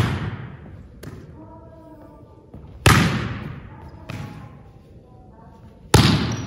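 A volleyball being spiked, hit hard by hand three times about three seconds apart. Each hit is a sharp slap that rings on in the echo of a gymnasium, with a softer knock of the ball landing in between.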